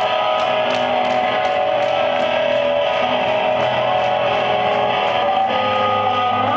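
Live rock band playing an instrumental passage: electric guitar with held notes over a steady high ticking beat of about three to four strokes a second.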